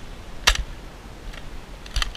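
Nerf N-Strike Elite Strongarm dart blaster firing a dart: one sharp snap about half a second in, then a fainter click near the end.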